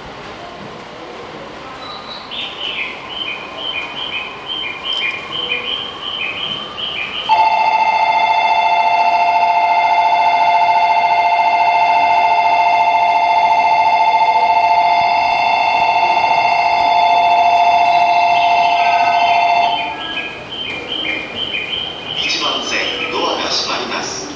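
Station departure bell ringing steadily for about twelve seconds beside a stopped commuter train, signalling that it is about to leave. Before and after the bell, a repeating electronic chime of short high notes plays. A public-address voice starts near the end.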